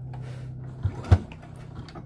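Domestic sewing machine at the start of a seam: a low steady hum until just under a second in, then two sharp mechanical clicks about a quarter second apart, the second louder.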